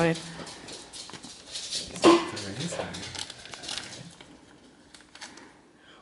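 Paper rustling and crinkling as a small paper-wrapped gift is handled and unwrapped. The crackle thins out and dies away after about four seconds, with a short spoken word about two seconds in.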